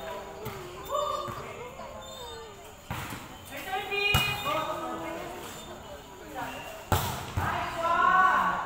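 Volleyball being struck during a rally: sharp smacks of hands and forearms on the ball, about three seconds in, a second later, and twice near the end.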